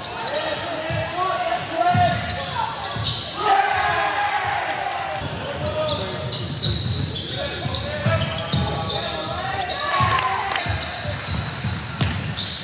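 Basketball being dribbled on an indoor court, a run of repeated thuds, with players' and spectators' voices echoing through the gym hall.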